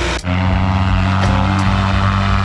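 Paramotor engine and propeller running at high power for a takeoff, a steady low drone. There is a brief dip just after the start.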